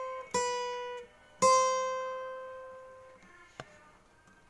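Acoustic guitar ending a song: two strummed chords, the second, final chord left to ring and fade away, then a short click near the end.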